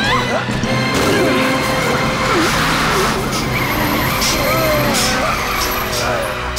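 Cartoon sound effects of a cement mixer truck skidding as it is forced to a stop: tyre skid and scraping with a few sharp hits, over background music.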